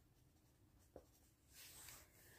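Near silence, with one soft click about a second in, then a faint scratch of pen and paper against a workbook page near the end.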